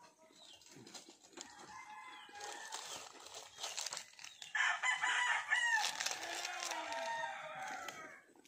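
A rooster crowing: one long call in the second half, after a few seconds of softer sound.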